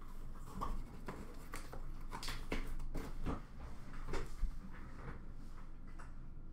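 A cardboard box being handled: its lid is closed and the box set down on a counter, giving a series of irregular knocks and scuffs that die away about five seconds in.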